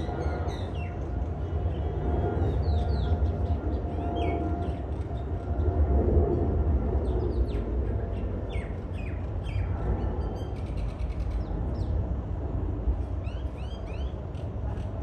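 Small birds chirping in short, quick downward notes that come and go in clusters, over a steady low outdoor rumble.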